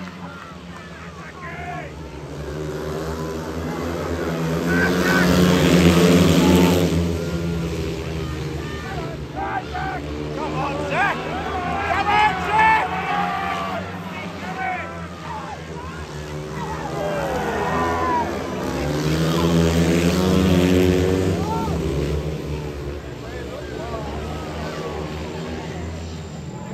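Speedway motorcycles' 500cc single-cylinder engines racing round the track, their snarl swelling loud twice as the pack passes close, about a quarter of the way in and again past two-thirds, and falling away between. Voices are mixed in with it.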